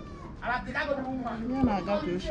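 Speech: a woman talking, answering a question about how things are going.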